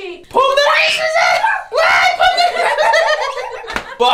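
A high-pitched young voice shrieking and laughing in two long stretches, each about a second and a half.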